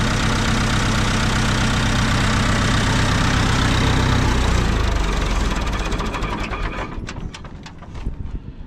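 Massey Ferguson 165 tractor engine idling, then shut off about four seconds in: its note drops and it runs down to a stop over the next couple of seconds, with a few ticks as it dies.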